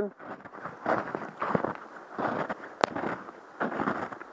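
Footsteps crunching in snow, an irregular series of steps, with one sharp click about three seconds in.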